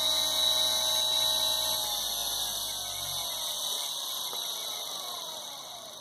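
The 24-volt brushed DC motor from a Razor E300 electric scooter, running unloaded at top speed, about 3,500 RPM, with a pretty quiet whine. From about two seconds in it slows as the speed control is turned down, and its whine falls in pitch and fades.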